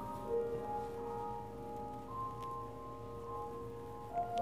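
Soft keyboard music of long, slowly changing held chords, organ-like.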